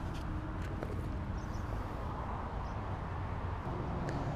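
Steady low rumble of outdoor background noise, with a few faint clicks and two faint high chirps near the middle.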